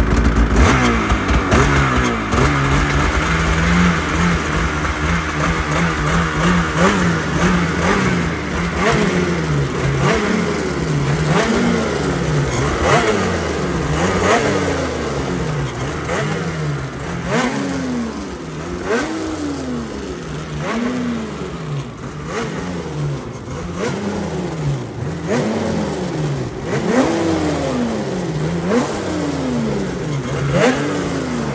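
Polaris 9R 900 cc two-stroke twin snowmobile engine, just pull-started, running at a fast idle and then revved in short blips about every two seconds, each one rising and falling in pitch. The sled is on a stand and the engine is being blipped to check clutch engagement after clutching changes.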